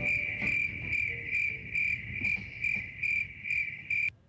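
A steady high-pitched electronic tone pulsing evenly, a little over twice a second, that cuts off suddenly at the end.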